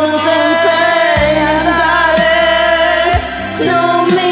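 A pop ballad sung by a woman over a backing track. A deep bass and beat come in about a second in.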